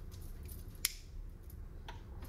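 Kitchen handling sounds: one sharp click a little under a second in and a softer click near the end, over a low steady hum.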